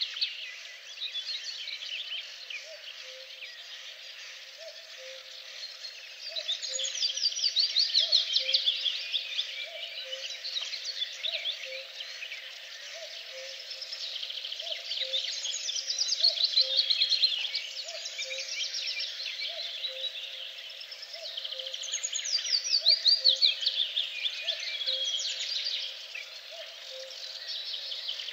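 Songbirds singing over a steady chorus of high chirps. One bird sings a louder phrase three times, each a fast trill falling in pitch and lasting about three seconds, with a faint low note repeating about once a second beneath.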